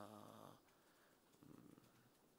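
A man's drawn-out, steady-pitched "uhh" hesitation trails off about half a second in, followed by near silence: room tone.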